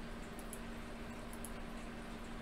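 Quiet room with a steady low hum and a few faint ticks from a computer mouse being clicked.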